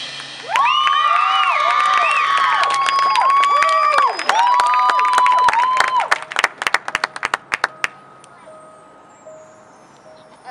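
Stadium crowd cheering loudly with shouts and whistles, then scattered clapping that thins out and stops about eight seconds in.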